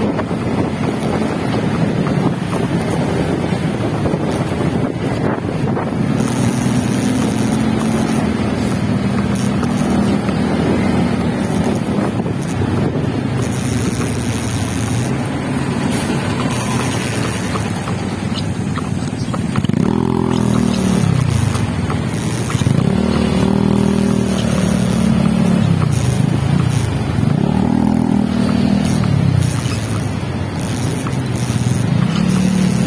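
Motorcycle engine running with wind noise on the microphone while riding in slow city traffic. In the second half the engine note rises and falls three or four times as the bike speeds up and slows.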